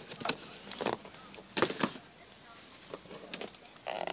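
Cardboard packaging of boxed craft punches being handled: several short taps and rustles as the boxes are moved about.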